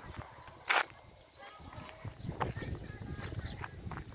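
Footsteps on a dirt path with handling noise from a handheld phone, irregular low thuds, and one short sharp rustle about three-quarters of a second in.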